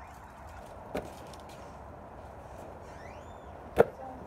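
A faint knock about a second in, then one sharp, loud impact near the end, with a faint rising chirp just before it.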